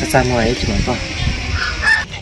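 A rooster crowing in the background, with a brief spoken line at the start.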